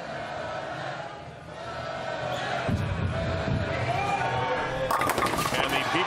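A bowling ball rolls down a wooden lane with a low rumble, then crashes into the pins about five seconds in, followed by the clatter of falling pins. The murmur of a bowling-alley crowd runs underneath.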